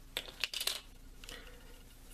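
Light clicks and taps of plastic kitchen utensils being set down and picked up on a countertop: a quick cluster in the first second, then one softer tap.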